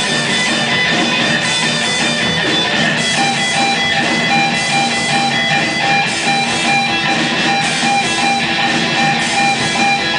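A rock band playing live: loud, distorted electric guitars strumming over drums, with held guitar notes ringing through.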